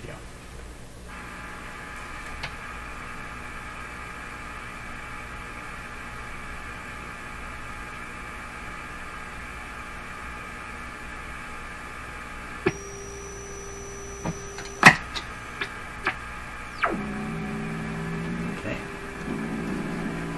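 Hallicrafters S-38 tube receiver's speaker gives a steady buzzing hum as a signal generator is swept up toward 20 MHz. A tone breaks through briefly with a few clicks, then about three seconds before the end a rough, buzzy test tone comes in and holds: the receiver's image response to the generator near 19.1 MHz.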